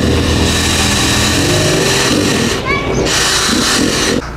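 Cordless drill running in two stretches, with a short break a little over two and a half seconds in, as it drills into the plastic bodywork of an enduro dirt bike. A steady low engine hum runs underneath.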